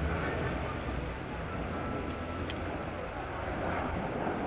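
Airbus A400M Atlas's four turboprop engines droning steadily as the transport banks overhead, with a low hum beneath the propeller noise. A single faint click about two and a half seconds in.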